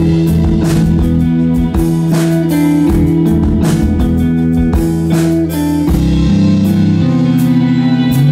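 Electric rock band playing a steady groove: electric guitars over drums, with regular drum and cymbal hits.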